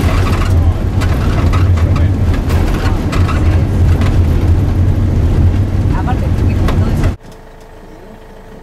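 A small bus driving on a gravel road, heard from inside the cabin: a loud steady low drone of engine and tyres with rattling and crunching from the gravel. It cuts off abruptly near the end, leaving a much quieter steady hum.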